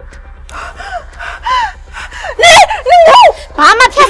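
A woman's voice crying out and gasping, high-pitched and sliding up and down, growing much louder in the second half.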